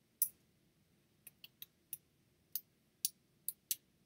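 A string of about nine short, sharp clicks at a computer, unevenly spaced, with quiet between them.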